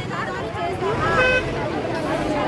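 Crowd of women and police talking and arguing over one another, several voices overlapping. A short toot sounds about a second in.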